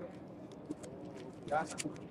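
Quiet city-street background with faint paper rustling as pages are turned, and one short, low voiced sound about one and a half seconds in.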